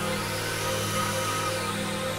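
Experimental electronic drone music: several sustained tones held steadily together, with slow sweeping glides high above them.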